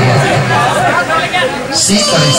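A man speaking into a stage microphone, his voice amplified through the PA system; only speech, no music in this moment.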